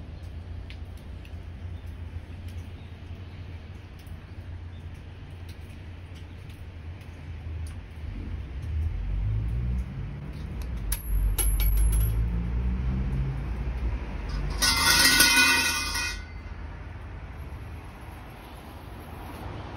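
Street traffic rumble that swells as a heavy vehicle passes, with a loud, brief, shrill sound about fifteen seconds in.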